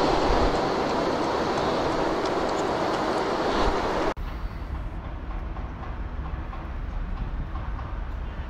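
A steady rushing outdoor noise. It cuts off suddenly about four seconds in and gives way to a quieter low rumble.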